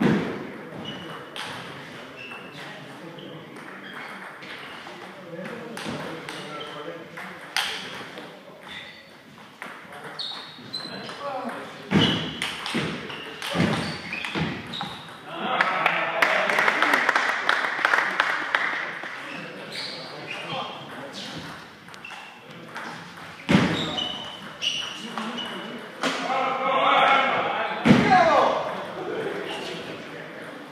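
Table tennis ball clicking back and forth off bats and table in rallies: short sharp ticks, some with a brief high ping, with gaps between points. People's voices come in around it, loudest a little past the middle and near the end.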